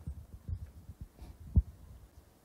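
Low, irregular thumps and rumble of a handheld microphone being handled, with one louder thump about three-quarters of the way through.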